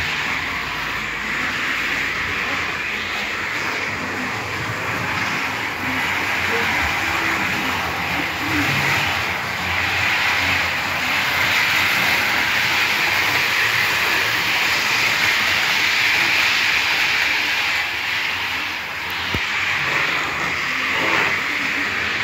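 H0-scale model train running along the layout track: a steady whir of the small electric motor and the wheels on the rails, rising and falling slightly in loudness.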